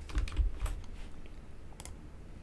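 A few scattered light clicks from computer input, with two close together near the end.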